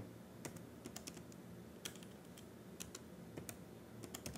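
Faint, irregular clicks of computer keyboard keys being typed.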